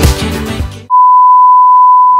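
Pop music that cuts off abruptly about a second in, replaced by a loud, steady, unwavering beep: the test tone laid under TV colour bars as an editing transition effect.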